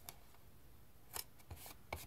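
Card stock and patterned paper being handled and pressed onto a small paper box. There is a faint tap near the start, then a few short, quiet paper rustles and scrapes about a second in and again near the end.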